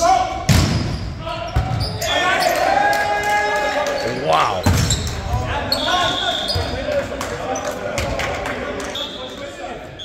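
Volleyball being struck during a rally: several sharp hits of the ball echo in a large gym. Players' voices and high squeaks, typical of shoes on the hardwood floor, run between the hits.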